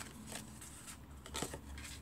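Faint rustling and sliding of cardstock pieces being handled and moved across a craft mat, with a soft tap about one and a half seconds in.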